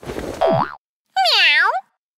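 Cartoon transition sound effects: a swishing whoosh whose pitch swoops down and back up, then, after a short gap, a pitched boing-like tone that dips and rises again.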